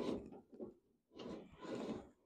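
Manual window regulator and door glass of a 1967 Pontiac Firebird being cranked down in a few strokes, the glass sliding and rubbing in its channel with the regulator gears freshly greased.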